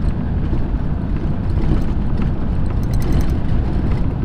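Steady in-cab running noise of a Nissan Navara's 2.5-litre turbo engine cruising at about 100 km/h, with tyre road noise off the wheels. The exhaust drone is gone, tamed by a newly fitted muffler in the 3-inch straight-through system.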